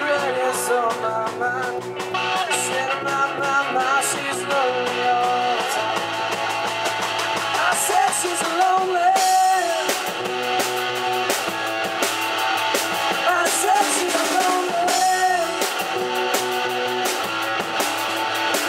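A small rock band playing live: amplified electric guitars over a drum kit with steady cymbal hits, some guitar notes bending in pitch.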